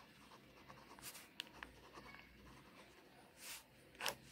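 Faint scratching of a pen writing on paper, in short separate strokes as letters are formed.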